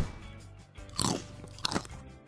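Crunching bite sound effect of chocolate being bitten into: two crunchy bites, about a second in and near the end.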